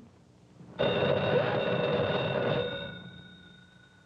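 A single ring of an old electromechanical telephone bell, starting about a second in, held for about two seconds and then dying away.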